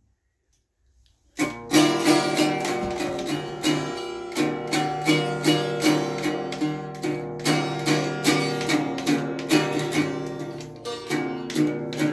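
Acoustic guitar strummed by a young child, beginning about a second and a half in. It goes in a steady run of about two strokes a second, the chord ringing on between strokes.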